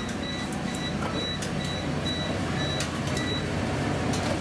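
Short electronic beeps repeating about four times a second for about three seconds, over the steady hum of a restaurant kitchen's extraction and faint clinks of utensils.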